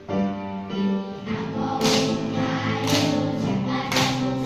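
A group of children singing a song with backing music. From about two seconds in, sharp claps land roughly once a second.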